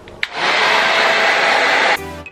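Conair Pro Yellowbird pistol-grip hair dryer switched on with a click, then running with a loud, steady rush of air.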